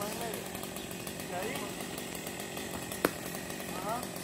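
Chainsaw running steadily while an oak is being cut down, with faint shouted voices and one sharp click about three seconds in.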